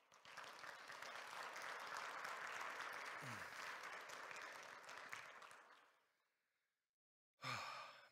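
A congregation applauding: dense clapping that holds steady for several seconds, then dies away about six seconds in.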